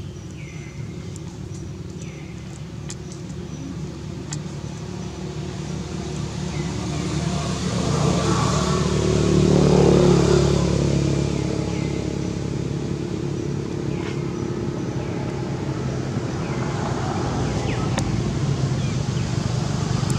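A motor vehicle engine passing by. Its low hum swells to its loudest about ten seconds in, then eases to a steady drone.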